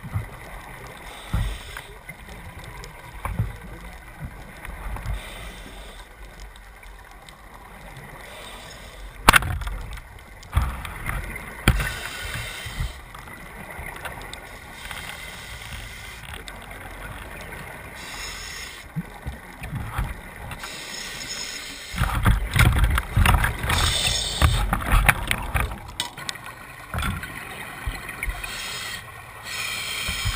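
Underwater camera audio: muffled water movement and knocks against the camera housing, with irregular low thumps. A sharp click comes about nine seconds in, and a louder stretch of rushing, thumping noise runs for several seconds in the last third.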